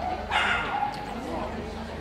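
A dog barks once, short and sharp, about a third of a second in, over a murmur of voices.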